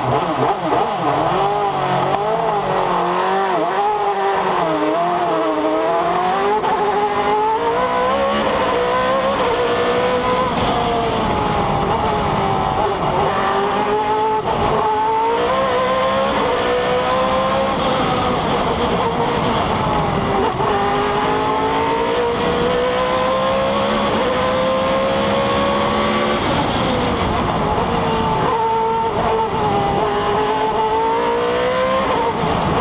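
Osella FA30 sports-prototype race car's engine, heard onboard under full acceleration up a hill-climb course. The revs waver over the first few seconds off the start line, then the pitch rises repeatedly and drops back at each gear change.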